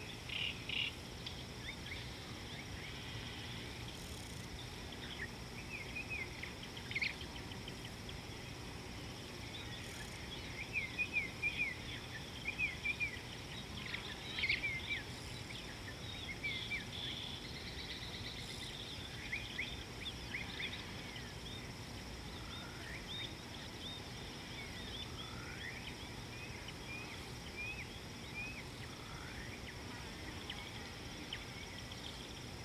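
Wild birds calling: many short chirps and quick sweeping notes, busiest around the middle, over a steady high insect drone and a low background rumble.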